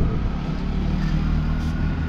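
Small engine of a three-wheeled mototaxi running as it passes in the street, a steady low rumble, with a single knock right at the start.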